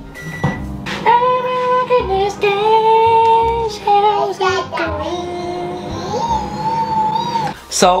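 A voice singing a slow melody of long held notes, over the steady low hum of a running microwave oven. A short high beep sounds about half a second in.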